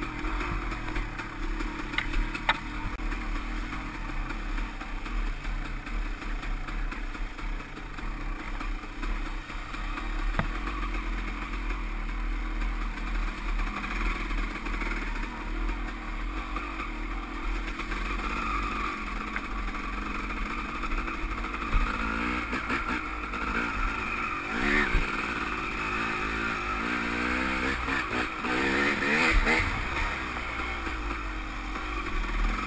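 KTM dirt bike engine running on the move along a rough trail, the revs rising and falling with the throttle, more so near the end, with a few sharp knocks from the bike over the ground.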